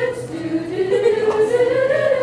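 Small madrigal choir singing a cappella, holding long notes, with the melody dipping and then rising.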